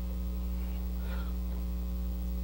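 Steady low electrical mains hum with a buzzy overtone, unchanging throughout.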